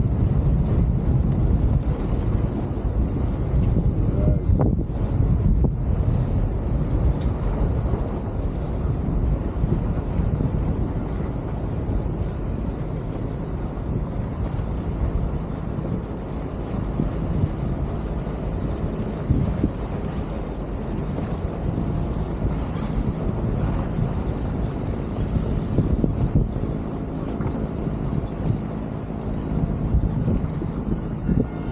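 Wind buffeting the microphone over the steady low drone of a motor cruiser's engine running under way.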